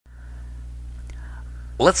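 Steady low electrical-sounding hum of the recording background with a faint higher whine over it and one faint click about a second in, then a man's voice starts speaking near the end.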